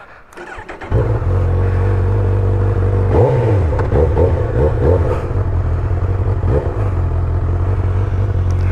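A motorcycle engine starts about a second in and settles into a steady idle, with a few short throttle blips in the middle.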